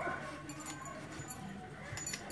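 Faint handling noise: a wire twist tie being untwisted from a coiled rubber power cord, with a few small clicks and rustles.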